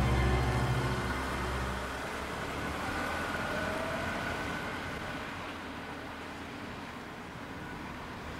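A car driving away, its engine and road noise slowly fading, as music dies out in the first couple of seconds.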